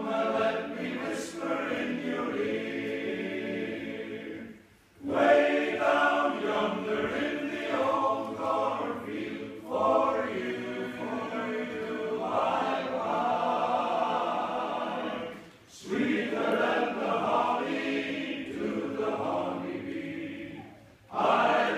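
Men's choir singing a barbershop song a cappella in close harmony, in long phrases with brief breaks about five seconds in and again near sixteen seconds.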